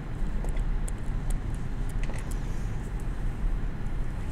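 Steady low rumble of lecture-room background noise, with faint light ticks and rustles scattered through it.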